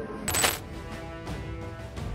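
A brief, bright, metallic, chime-like transition sound effect about a quarter second in, then the outro music begins with sustained notes.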